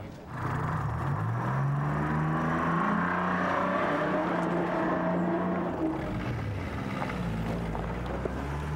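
Old Land Rover Series engine driving up under throttle. Its pitch climbs over the first few seconds, holds, then drops back about six seconds in as the throttle eases.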